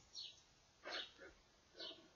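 Faint short animal calls, three of them about a second apart, each dropping in pitch, over near silence.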